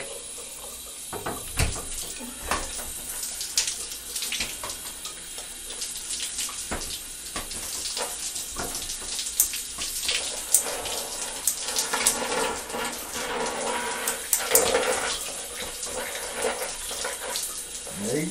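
Shower water running and splashing as shampoo is rinsed out of hair, with irregular splashes over the steady spray.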